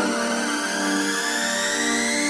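Electronic house music in a breakdown: the kick drum and bass drop out, leaving held synth chords under a synth sweep that rises slowly in pitch.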